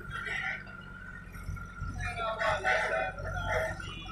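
Diesel engine of a JCB backhoe loader running steadily while it digs, with a rooster crowing over it in the second half, one long call that is the loudest sound.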